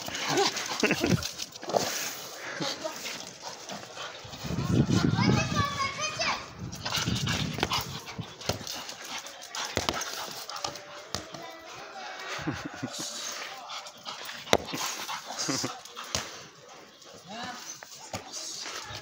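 Pit bull in a basket muzzle playing with a soccer ball on a hard court. The ball hits the ground with a few sharp thuds, and the dog barks among voices.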